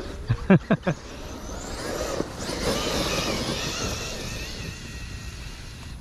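8S brushless electric RC monster truck running across grass at a distance. Its motor and drivetrain whine rises about a second and a half in, wavers up and down through the middle, and fades toward the end. Brief laughter near the start.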